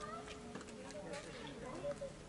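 Faint voices with the lingering hum of a church bell, a single steady tone that dies away about half a second in.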